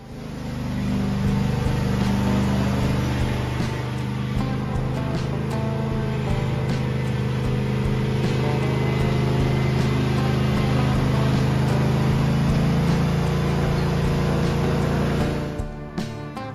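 Riding lawn tractor engine running steadily, mixed with background music; the sound drops away suddenly near the end.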